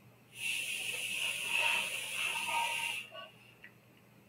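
A person breathing out hard into a close microphone while drinking from a water bottle: one steady hiss that starts just after the beginning and stops about three seconds in.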